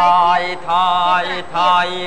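A voice chanting in a drawn-out, sung recitation style: three long held syllables with a wavering pitch.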